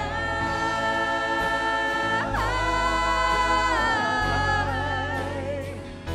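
Live worship song: women's voices singing long held notes into microphones over a steady low accompaniment, the first note held about two seconds before the melody moves to another long note.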